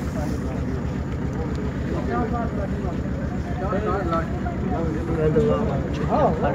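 A motor running with a steady low throb, about ten pulses a second, with faint voices over it.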